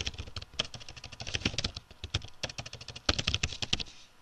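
Typing on a computer keyboard: a quick run of key clicks, with a short lull just before three seconds in and then a louder flurry of keystrokes.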